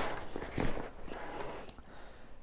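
Fabric rustling and scuffing as a packing bag is pushed down into a travel backpack, with a few soft knocks, dying down toward the end.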